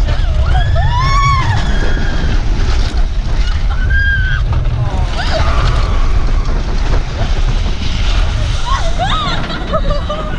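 Riders screaming and yelling on an inverted roller coaster over a loud, steady rush of wind buffeting the microphone and the train's rumble. A long rising-and-falling scream comes about a second in, shorter cries follow a few seconds later, and another cluster comes near the end.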